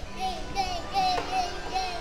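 A small child singing a short run of high notes, about six in two seconds, each dipping slightly at its end, over faint background music.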